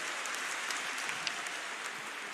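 Audience applause in a large hall: a steady, fairly soft patter of many hands clapping.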